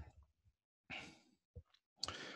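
Near silence, broken about a second in by one short breath, with a faint click just after.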